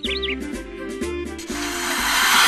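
Children's backing music with light percussion, a few bird chirps at the very start, then a snake's hiss for the cobra starting about one and a half seconds in and growing loud.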